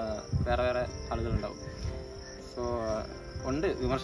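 A person's voice in short phrases, talking or singing, with a steady high-pitched tone running underneath.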